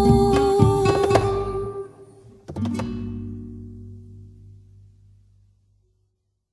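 Closing bars of an Afro-Peruvian song on guitar: the last plucked phrase breaks off about a second in, then a final chord is struck about two and a half seconds in and rings out, fading away.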